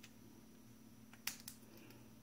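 African grey parrot's beak biting into watermelon flesh: two short, sharp wet clicks about a quarter second apart, over a faint steady hum.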